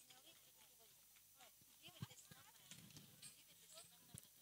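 Near silence after the music stops: faint, distant voices and a couple of light taps.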